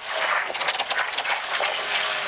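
Inside a Toyota Corolla AE86 rally car taking a square right over gravel on the tarmac: a loud hiss of tyres and loose gravel, with many quick ticks of stones striking the underbody.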